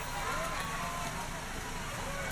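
Roadside street ambience: a steady low rumble of passing traffic under faint, indistinct voices.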